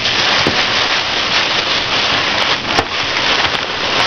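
A thin plastic bag and a paper grocery bag rustling and crinkling steadily as they are handled, with a few faint ticks.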